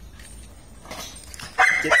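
A dog barks sharply near the end, a sudden loud, high-pitched call after a stretch of low background noise.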